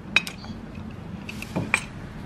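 Steel C-clamp clinking against a brake caliper as it is fitted over it to push the caliper piston back: two sharp metallic clinks about a second and a half apart.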